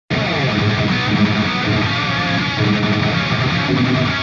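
Rock music with electric guitar, kicking in abruptly at full level and running on steadily.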